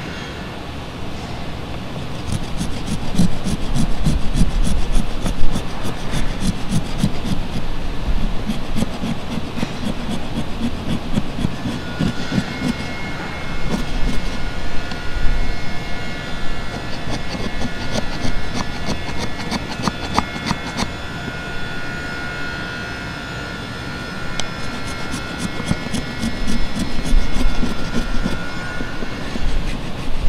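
Steel chisel paring and chopping into a wooden block: a rapid, uneven run of ticks, knocks and scrapes of the blade in the wood. A faint steady high tone runs in the background through the second half.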